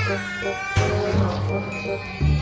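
A toddler crying in distress at a vaccination injection, over background music with a low bass line.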